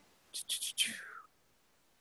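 Soft, breathy whispering from a person's voice, about a second long, fading out into near silence.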